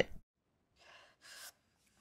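Two faint breaths close to the microphone, a short one about a second in and a slightly stronger, airier one just after.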